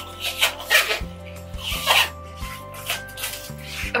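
Adhesive tape being pulled off a roll in several short pulls, over background music with a bass line that steps from note to note.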